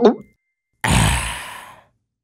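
A cartoon character's voice: a short sound sliding down in pitch, then, just under a second in, a loud breathy sigh that fades away over about a second.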